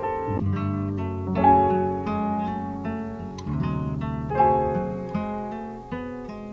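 An eight-bar melodic music sample looping from the MPC: pitched plucked and keyed notes, a new note or chord struck about every second, with no drums.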